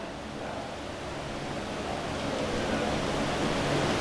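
Steady even hiss of background room noise picked up by the speaker's microphone, slowly growing a little louder.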